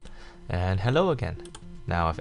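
A voice speaking, with a rise and fall in pitch about a second in and speech resuming near the end, over faint computer keyboard and mouse clicks.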